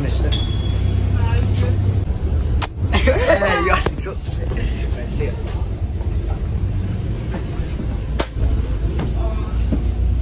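Steady low rumble inside a bus cabin, with a child's voice briefly about three seconds in and two sharp knocks, one near the third second and one near the eighth.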